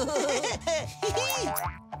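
Bouncy children's background music with a string of springy cartoon 'boing' sound effects, each rising and falling in pitch, several in quick succession.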